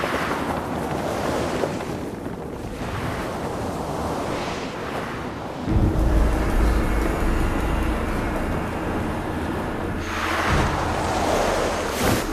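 Fantasy-drama sound effects: swelling whooshes of rushing air as a flying creature and magic energy bolts streak past, joined just before six seconds in by a deep, steady low rumble, with background music underneath.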